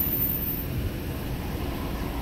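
Steady low rumble of a car heard from inside its cabin, with no distinct events.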